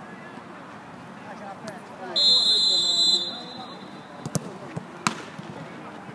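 A referee's whistle blown once, a shrill steady blast lasting about a second, followed by two sharp kicks of a football, with voices faint underneath.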